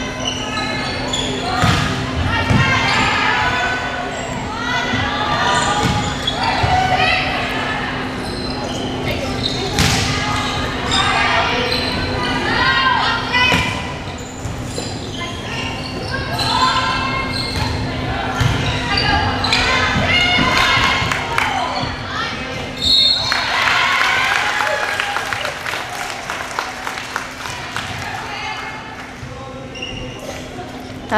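Volleyball being played in an echoing gymnasium: players and spectators shout and cheer while the ball is struck and thuds on the floor again and again. A steady low hum runs underneath.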